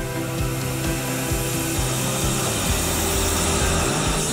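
Bandsaw cutting through a curved bent-wood chair backrest: a steady saw hiss that grows stronger in the second half, under background music.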